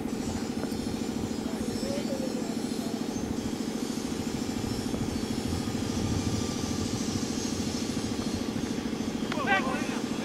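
A motor runs steadily throughout with a constant low drone. Near the end there is a single sharp knock, and a voice calls out.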